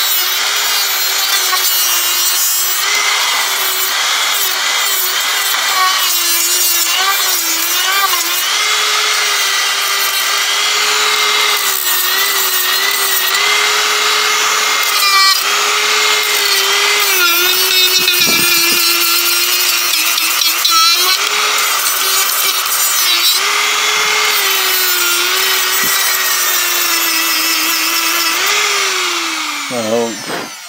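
Handheld rotary tool with a small abrasive sanding bit grinding over carved wood: a steady high motor whine that dips and wavers slightly as the bit bears on the wood, over a rough sanding hiss. Near the end the whine drops in pitch as the tool winds down.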